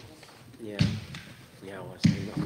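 Indistinct conversation echoing in a large hall, with a sharp knock about three-quarters of a second in.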